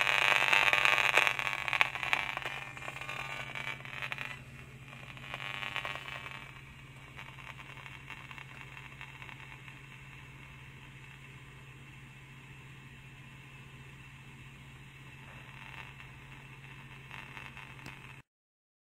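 Gigahertz Solutions HF 59B RF meter's loudspeaker giving a loud crackling buzz that fades away over the first six seconds, as shielding fabric blocks the radio-frequency signal and the reading drops from 284 to 0.02. A faint low hum is left after the crackle has faded.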